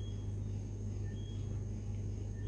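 Quiet room tone: a steady low hum, with a faint short two-note chirp, a lower note then a higher one, repeating about once a second.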